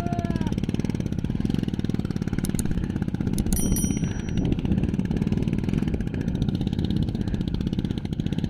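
Motorcycle engine running at idle, an even rapid putter. A few light metallic clinks come about a third of the way in.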